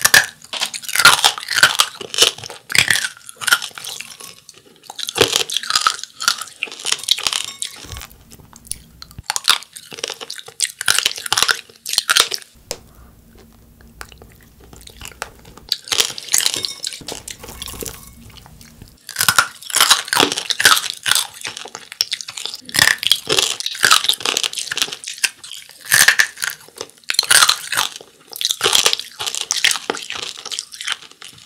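Close-up crunching and chewing of angel-hair candy, brittle threads of spun sugar syrup boiled until lightly caramelized. It comes as bursts of crisp crackling bites, with a quieter pause in the middle.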